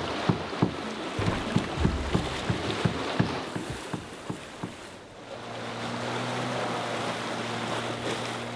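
Lake water splashing against rocks, then from about five seconds in the steady low hum of a fishing boat's outboard motor running.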